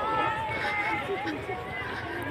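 Voices outdoors, with one high voice holding a long, wavering call for about a second and a half, over the steps of people running on a concrete path.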